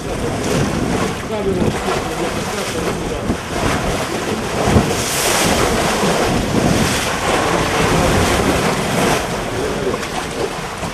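Sewage gushing and churning into a flooded sinkhole from a burst sewer collector, a steady loud rush of water. There is a brief louder surge about five seconds in.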